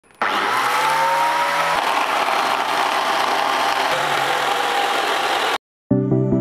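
Angle grinder running as the motor of a homemade bucket flour mill: a loud, steady running noise that cuts off suddenly near the end.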